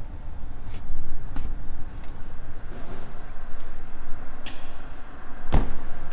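Rustling and handling noise with a few light clicks, then a car door of a Land Rover Freelander 2 shut with a single heavy thud about five and a half seconds in.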